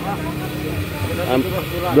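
Conversational speech with a hesitant "um", over a steady low background rumble.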